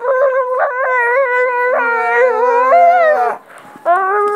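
A child holding one long, high-pitched vocal cry for about three seconds. A second, lower voice joins in about halfway through, and both stop together.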